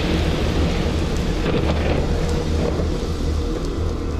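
Thunder rumbling over steady rain, a storm sound effect.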